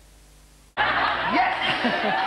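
Faint steady hiss, then under a second in an abrupt cut to loud laughter and voices in a TV studio.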